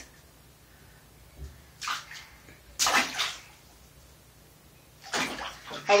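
Bathwater splashing and sloshing in short bursts in a bathtub: one splash about two seconds in, a stronger one about three seconds in, and more splashing near the end.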